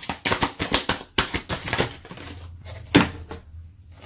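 A deck of oracle cards being shuffled and handled: a quick run of card clicks and flicks for about two seconds, then a single sharper click about three seconds in as a card is drawn.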